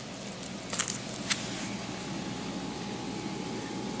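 Quiet steady room hum, with a few short soft clicks a little under a second in, typical of hands handling plastic-packaged items.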